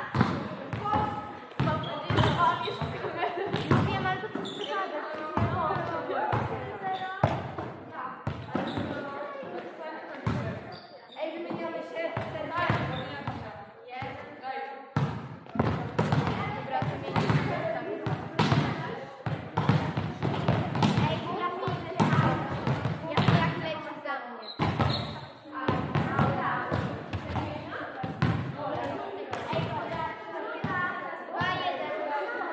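Volleyballs being struck and bouncing off a sports-hall floor in many irregular sharp knocks, mixed with players' voices, ringing in a large hall.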